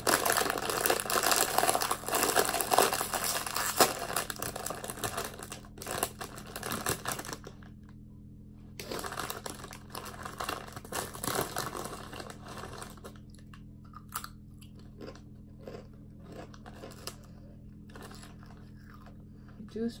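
Plastic Ruffles crisp bag crinkling loudly as it is handled and torn open, with a short pause partway through. Near the end come sparser crackles and crunches as chips are taken out and eaten.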